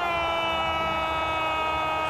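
A man's long drawn-out goal cry from a football commentator, one steady held shout that never changes pitch.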